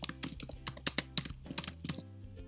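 Quick typing on a computer keyboard, a steady run of about six or seven keystrokes a second.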